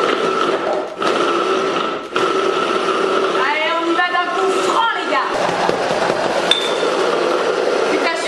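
Hand blender motor driving a chopper-bowl attachment, blending frozen banana with plant milk and peanut butter into a thick ice cream. It runs with a steady whine, cut by two brief pauses about one and two seconds in as it is pulsed, then runs continuously.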